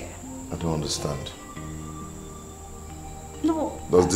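Soft background film music with held low notes, under a thin, steady high-pitched tone; a couple of brief spoken sounds break in about a second in and near the end.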